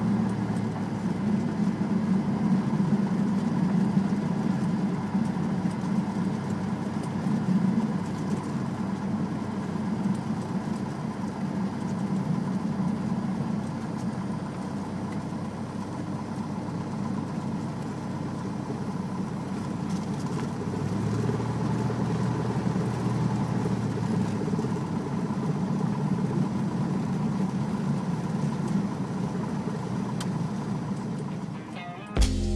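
Cessna 172's piston engine and propeller running steadily at low power on the ground, heard from inside the cabin, with a slight change in engine note about two-thirds of the way through.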